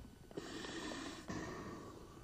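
Faint rush of air as a rescue breath is blown mouth-to-mouth into a CPR training manikin, lasting about a second, followed by a shorter, softer stretch of air.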